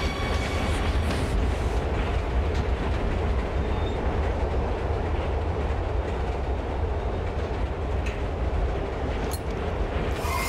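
Subway train running, heard from inside the car: a steady low rumble with a hiss over it and a couple of faint clicks near the end.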